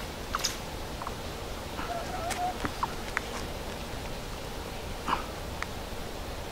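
Quiet woodland background: a steady low hiss with a handful of faint, very short, high-pitched chirps or ticks scattered through it.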